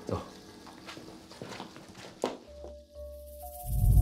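Background drama score with soft held tones and a few light clicks. Near the end a deep rumbling swell rises and becomes the loudest sound.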